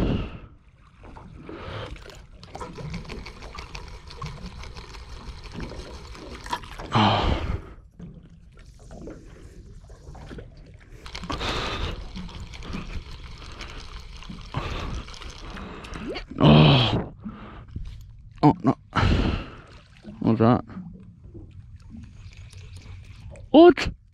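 A spinning reel being wound while a metal jig is worked from a small boat, with water sloshing around the hull. Short loud bursts of a man's voice cut in several times, the clearest near the end.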